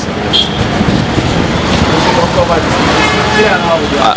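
Steady street traffic noise from passing cars and other vehicles, with voices talking underneath.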